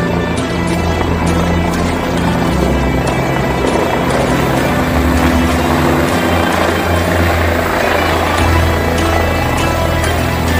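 Background music with a steady beat, laid over the running rotor and engine of a helicopter coming in to land; the helicopter's noise grows stronger through the middle.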